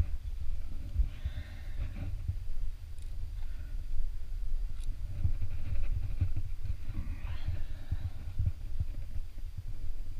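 Irregular low thumps and rumble picked up by a head-mounted action camera as a climber moves up the rock face, with a couple of faint clicks.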